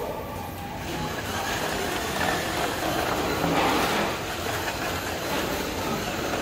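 A wheeled delivery robot rolling across a tiled floor, its wheels and drive motors making a steady rumbling noise that swells about a second in.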